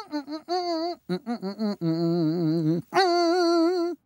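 A cartoon character's voice humming a little tune on a nasal 'nnn': a run of short wavering notes, then one long held note near the end.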